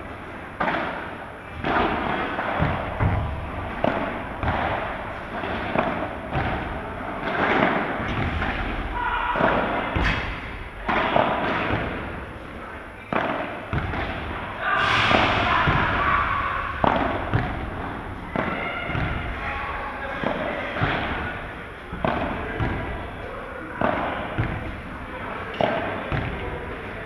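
Padel balls being struck by rackets and bouncing in rallies: sharp pops at irregular intervals, with voices in the background.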